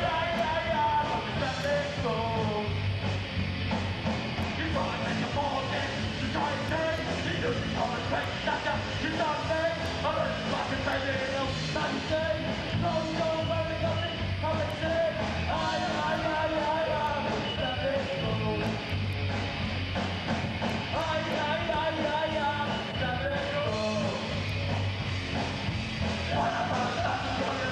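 Live rock band playing with electric guitar and drums, a vocalist singing loudly into a microphone over it without a break.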